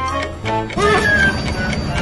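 Background music with a steady held chord, and a child's brief exclamation partway through.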